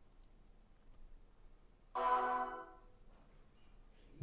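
ArcaOS (OS/2) system sound: a short musical chime of several steady tones about two seconds in, lasting under a second, played over the speakers as the desktop comes up.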